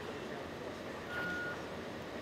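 Steady hum of a factory hall, with one short electronic beep from equipment about a second in.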